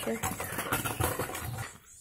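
Rustling and light knocking from a phone's microphone rubbing against a jacket as it is carried, uneven and fading out shortly before the end.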